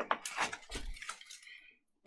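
A picture-book page being turned and the book handled: a few faint rustles and light taps during the first second and a half.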